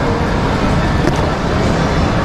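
Steady loud background rumble and hiss, with a few light clicks and scrapes as a small blade cuts along the tape seam of a cardboard box.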